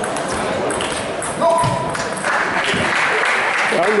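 Table tennis rally: the celluloid ball clicks sharply off bats and table several times. About halfway through, after the point ends, applause comes in as a steady patter.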